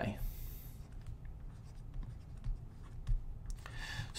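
Faint scratchy rubbing of handwriting strokes being drawn by hand, with a light click about three seconds in.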